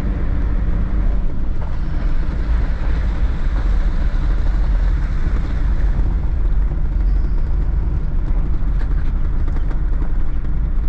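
Steady low engine and road drone of a four-wheel-drive tow vehicle, heard from inside its cabin as it drives slowly over gravel.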